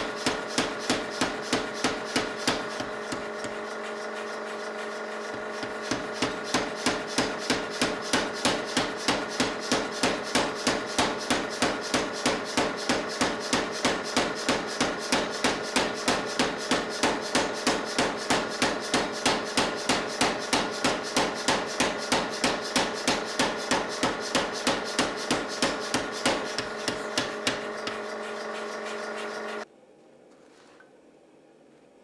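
Power hammer striking a hot steel axe blank in quick, even blows, about four or five a second, over a steady hum. The blows pause briefly about three seconds in, then resume and stop near the end.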